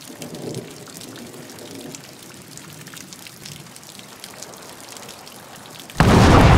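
Steady rain falling on foliage, with many distinct drops ticking through it and a low rumble in the first second or two. At the very end a loud crack of thunder breaks in suddenly.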